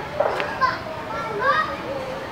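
Children talking and calling out, several high voices overlapping.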